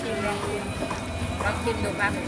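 People talking, voices only partly distinct, with some light knocking.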